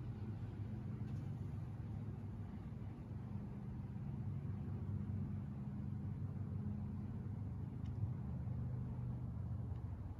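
A steady low hum, with a faint click about eight seconds in.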